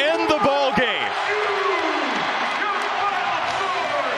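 Arena crowd roaring and cheering at the final buzzer of a home win. Loud shouting voices sweep up and down through the first second before melting into the steady crowd noise.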